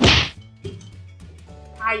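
A single sharp whack right at the start, fading fast: a punch-hit sound effect for a monster toy striking a hero figure down.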